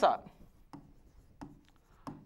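Faint scratching and light taps of a stylus writing on an interactive display's screen.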